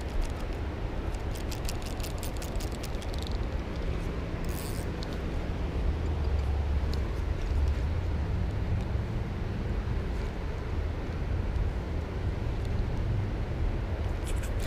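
Steady low outdoor rumble beside a river, with a faint low hum that comes and goes. A quick run of light clicks comes in the first few seconds, then a short hiss about four and a half seconds in.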